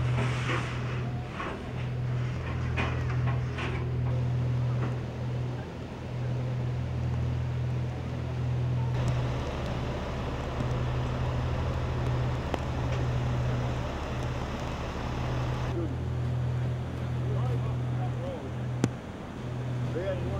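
Outdoor sound of a rain-swollen river rushing, with wind on the microphone over a steady low hum. The sound changes abruptly about nine and sixteen seconds in, and a sharp click comes near the end.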